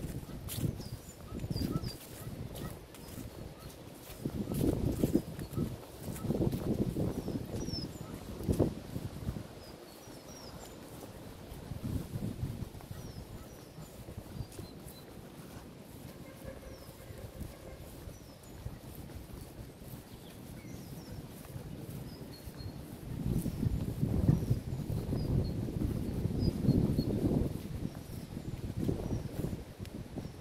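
Footsteps across grass while wind rumbles on the microphone in gusts, loudest a few seconds in and again near the end. Small birds chirp faintly throughout.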